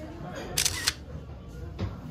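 A camera shutter click about half a second in, with a fainter click near the end, over low background music.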